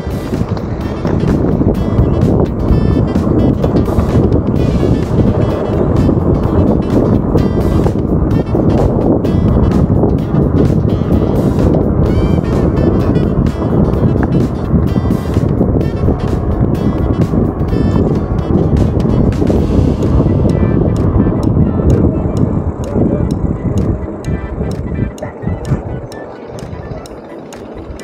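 Rough, loud noise of a bike being ridden over rough trail, picked up by a handlebar action camera: rumbling and wind on the microphone with frequent rattles and knocks, easing off a few seconds before the end. Background music plays over it.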